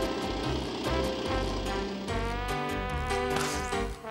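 Light background music with a steady buzz over the first two seconds, the sound of a small cement mixer's drum turning.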